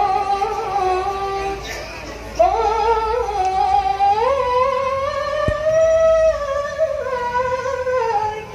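Female vocal singing a slow, drawn-out qasidah melody with long held notes that step upward in pitch. There is no drum accompaniment: this is the unaccompanied vocal opening of a rebana qasidah song.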